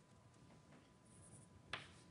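Chalk on a blackboard: mostly quiet, with a brief faint high scrape about a second in and then a single sharp tap of the chalk against the board near the end as writing starts.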